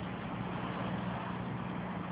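Steady background noise of street traffic, with a faint low steady hum underneath.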